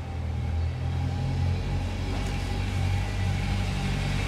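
A cat purring close by: a low, steady rumble whose pitch shifts every second or so.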